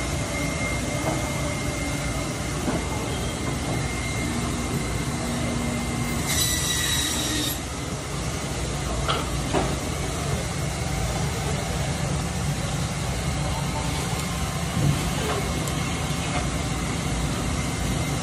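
Steady machine-like rumble and hiss of background noise, with a brief high-pitched squeal about six seconds in and a few faint knocks.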